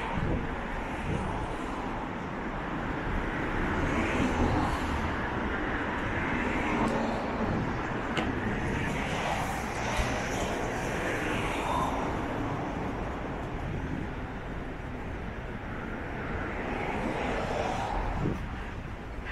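Road traffic on a multi-lane city street: a steady wash of engine and tyre noise that swells now and then as vehicles pass.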